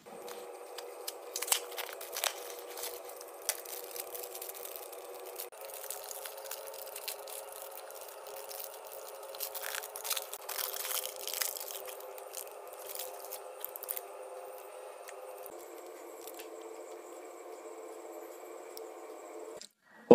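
Crinkling and tearing of a chocolate bar's foil and paper wrapper being opened by hand, with scattered sharp clicks and crackles of handling over a faint steady hum.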